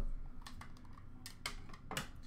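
A few light, sharp clicks of hard plastic graded-card slabs being handled, knocking together and set down on a glass counter.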